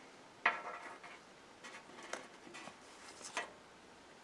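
Faint handling noise of small objects: a sharp tap about half a second in, then scattered light clicks and rustles, with one louder click near the end.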